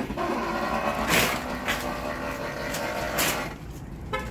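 Metal shopping cart rolling over pavement: the wheels rumble and the wire basket rattles, with a few sharper knocks as it goes, quieter near the end.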